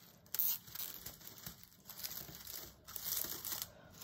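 Mesh netting crinkling and rustling as it is bunched up in the hands, in irregular bursts, loudest about half a second in and again near the end.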